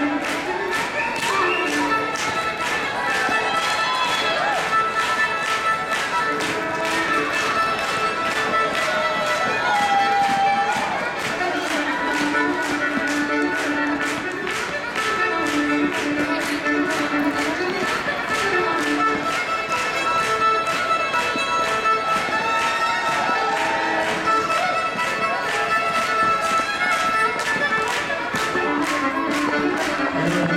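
Solo fiddle playing a fast dance tune with drone-like double stops, over a quick steady tapping beat.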